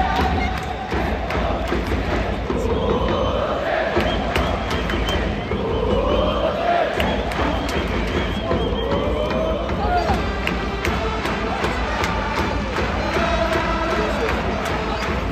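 Large crowd of baseball supporters singing a cheer chant together in unison, with rising swells in the melody every few seconds over a steady beat.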